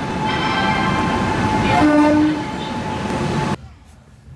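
Indian Railways electric locomotive and its train moving along a station platform: a steady rumble with a horn sounding in the first couple of seconds. The sound cuts off suddenly shortly before the end.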